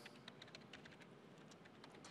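Faint typing on a computer keyboard: a quick run of soft key clicks.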